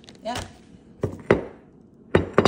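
Two sharp knocks of kitchenware on ceramic dishware, about a quarter-second apart, the second louder.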